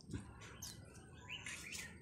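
Faint bird chirps: a few short calls in the background, with no other sound standing out.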